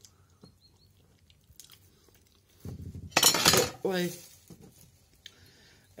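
A metal spoon dropped and clattering down for about half a second, a little past halfway, followed by a short startled "oy". Before it, faint eating noises and small spoon clicks.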